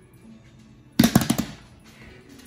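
Hands hitting a ball of risen bread dough on a granite countertop: a quick flurry of about five dull thuds, about a second in, lasting half a second.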